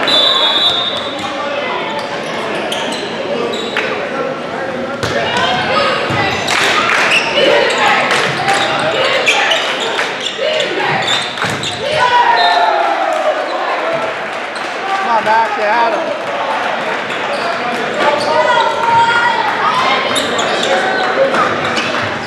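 Indoor volleyball rally in a large, echoing gym: a short referee's whistle at the start, then the ball smacked several times, with players and crowd shouting and cheering throughout.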